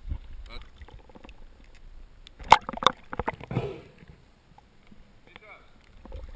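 Handling knocks on a kayak, two sharp ones about half a second apart near the middle, with brief muffled voices around them.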